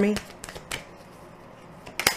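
Tarot deck being shuffled in the hands: a few soft card clicks in the first second, a quieter stretch, then a sharper snap of cards near the end.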